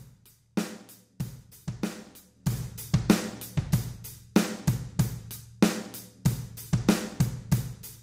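Drum kit overheads playing a steady beat of kick, snare and cymbal hits, starting about half a second in, run through a compressor at about four to one with a medium-fast time setting for a punchier sound.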